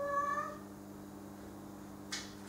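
A domestic cat gives one short meow, about half a second long.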